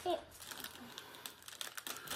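Faint rustling and crinkling of packaging as items are handled in a cardboard box, with scattered light clicks that grow busier near the end. A short voice sound comes right at the start.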